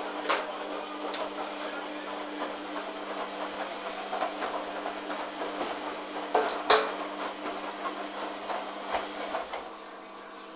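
Hoover DYN 8144 D front-loading washing machine tumbling wet laundry during its Cotton 60 °C wash, with irregular knocks and clatter from the drum over a steady motor hum; one louder knock comes about two-thirds of the way through. The tumbling stops just before the end, leaving only the hum.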